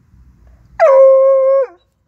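Bluetick Coonhound puppy giving one high, drawn-out bay at a caged raccoon. The call holds a steady pitch for just under a second, then drops off at the end.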